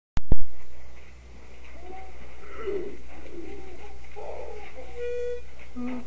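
Two sharp clicks at the very start, then a few soft, low, wavering cooing calls over a steady low hum, and a short held tone near the end.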